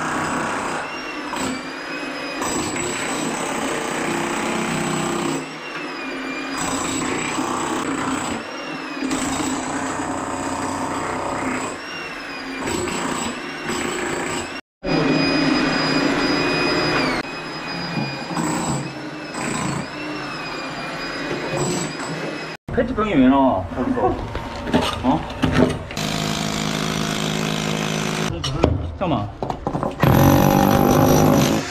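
Electric demolition hammer chipping into a hard concrete floor, running in long stretches with short pauses between them, its pitch sagging and recovering as it bites.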